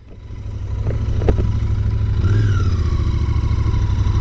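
Royal Enfield Continental GT 650's parallel-twin engine pulling away from a standstill, its sound building over the first second and rising again about halfway through as it accelerates. Two light clicks come about a second in.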